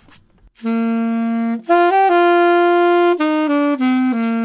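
Saxophone playing a short slow phrase, starting about half a second in: a held low note, a couple of notes stepping up to a long held note, then quicker notes stepping back down. The mouthpiece sits at the reed's sweet spot, giving a sweet sound.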